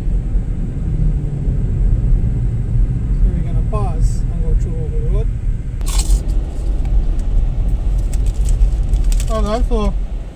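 Steady low rumble of a car's engine and tyres heard from inside the moving car, with muffled voices in two short stretches and a brief sharp knock about six seconds in.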